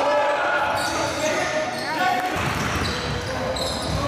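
Sounds of a basketball game in a large gym: a ball bouncing on the hardwood court among the voices of players and spectators.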